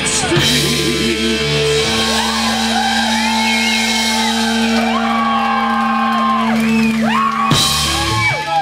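Punk rock band playing live and loud: a long held, sustained chord with the singer shouting and wailing over it, then a sudden full-band hit near the end.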